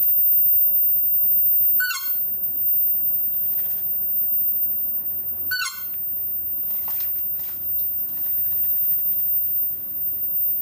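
A bird gives two short, sharp calls, one about two seconds in and another about five and a half seconds in, each a quick cluster of falling notes.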